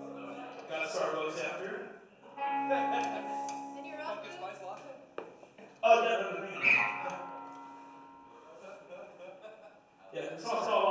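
A pop-punk band playing live: held electric guitar chords under shouted vocals into a microphone. A loud hit about six seconds in rings out and fades over the last few seconds.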